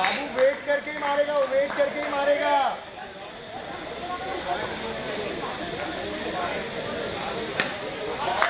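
Cricket players calling out in long, held shouts during the first few seconds, then quieter voices, then a single sharp crack of a bat hitting the ball near the end.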